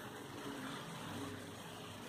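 Quiet room tone: a faint, steady hiss with a low hum, and no distinct sound standing out.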